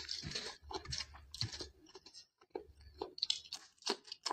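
Close-miked chewing of a mouthful of rice and chicken curry, eaten by hand, in quick irregular wet smacks and crunches.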